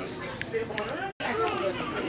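Indistinct background voices, with a complete dropout lasting a split second a little over a second in.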